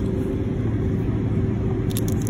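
Steady low drone of a jet airliner's cabin, with a constant hum in it. Near the end, a brief crinkle of a plastic snack wrapper being torn open.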